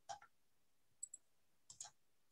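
Near silence with a few faint clicks, two of them in quick pairs.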